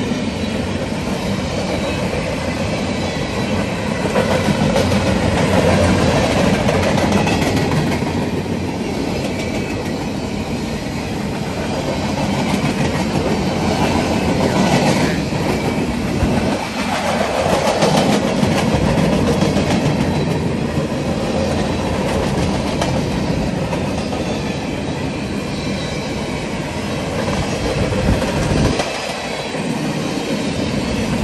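Norfolk Southern freight train of empty pipe cars rolling past at speed: a steady, loud rumble and rattle of steel wheels on the rails, with a brief dip in level near the end.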